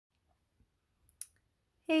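Near silence broken by a few faint ticks and one short, sharp click a little past a second in, just before a woman starts speaking.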